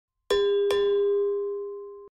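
Two quick bell-like dings about half a second apart, the second ringing on and slowly fading: a subscribe-button notification bell sound effect.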